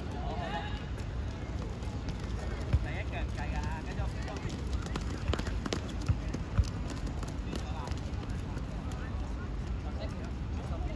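Children's voices calling across a football pitch over a low steady rumble. A few sharp thuds of a football being kicked on the wet pitch stand out: the loudest comes just under three seconds in, and two more follow just past six seconds.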